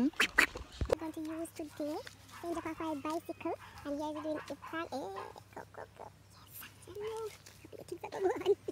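Quiet, indistinct talking in a high voice, words not made out, with a bump of handling noise about a second in.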